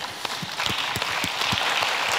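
Audience applauding, a dense patter of many hands clapping that swells over the first second and then holds steady.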